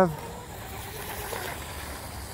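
Faint, steady whine of a micro RC hydroplane's 2030-size 7200 kV brushless motor running at speed: a thin high tone with a lower one beneath it.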